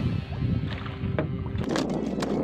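A steady low rumble with a few light knocks, as a freshly landed Spanish mackerel and its handline are handled against a wooden boat.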